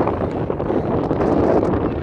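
Wind buffeting the microphone: a loud, uneven low rushing noise.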